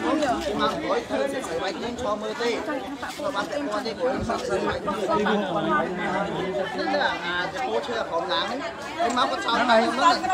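A group of people talking over one another, with a woman's voice closest.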